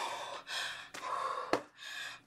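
A woman's excited gasps and heavy breaths, several in a row. Two sharp clicks come about a second in and about a second and a half in.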